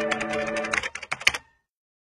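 Opening sound effect: a rapid, irregular run of sharp clicks like typing over a held musical chord. The chord cuts off less than a second in and the clicks stop about a second and a half in, leaving silence.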